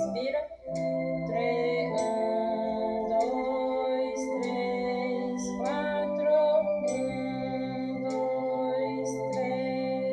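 Electronic organ playing a slow hymn in held chords, moving to a new chord every second or two, with a brief break about half a second in. Thin metronome ticks sound over it.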